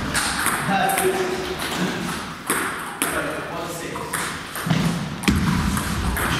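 Celluloid-type table tennis ball ticking off bats and the table in a serve and rally, sharp separate clicks echoing in a hall, over background voices.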